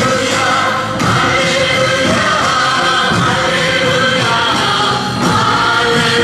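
Loud Christian worship-and-praise song, a group of voices singing together over instrumental accompaniment, running without a break.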